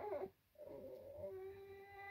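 Baby crying: a cry breaks off right at the start, and after a short pause a long, steady wail begins about half a second in and holds its pitch.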